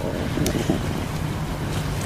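Steady wind and sea noise of a small boat out on the water, with a low stomach rumble.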